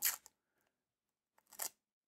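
Clear plastic protective film being peeled off a wristwatch: two short, faint crinkles, one at the start and another about a second and a half in.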